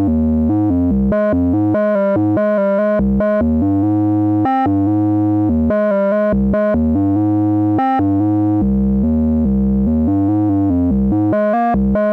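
Eurorack modular synthesizer playing a line of short pitched notes over a deep sine-wave bass from an oscillator, heard dry, without the module's wavefolder, distortion or VCA processing. The notes change a few times a second at a steady level.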